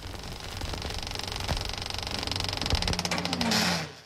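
Film projector running, a rapid, even mechanical clatter over a low hum, with a rising tone near the end before it cuts off suddenly.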